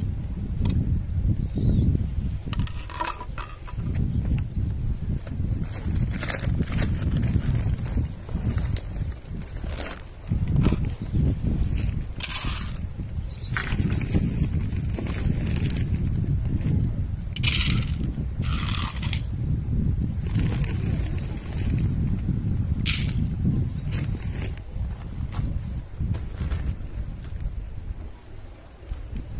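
Wind buffeting the microphone in a steady low rumble, with a few short rattles of dry cat food poured onto ceramic plates, mostly in the second half.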